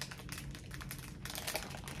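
Faint crackling and clicking as cookies are eaten from crinkly plastic wrappers: small irregular clicks of wrapper plastic and crunchy bites.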